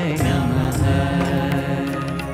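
Devotional Hindu kirtan: voices chanting Sanskrit names on long held notes, with tabla accompaniment.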